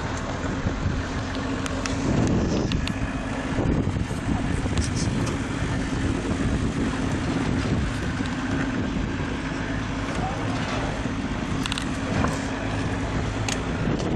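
Open safari game-drive vehicle driving off-road through bush, its engine running steadily under a haze of wind and rolling noise, with scattered clicks and knocks.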